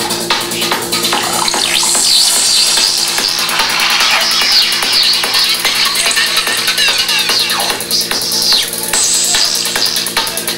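Electronic dance music from a DJ set, with a steady beat and gliding, warbling synth sweeps in the upper range.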